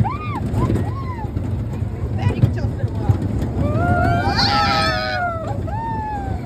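Riders on a moving fairground ride squealing and screaming in short rising-and-falling cries, with several voices screaming together about four to five seconds in, over a steady low rumble from the ride.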